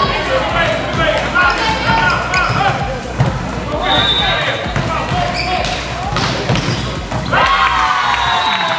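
Volleyball rally on an indoor court: players shouting calls and the ball struck with dull thuds, ending in a burst of shouting and cheering near the end as the point is won.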